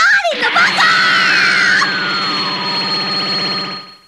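Anime electric-shock sound effect: a loud, dense electric buzz with a rapid pulsing crackle, a steady high whine and a whistling tone that slides slowly down in pitch, fading out just before four seconds.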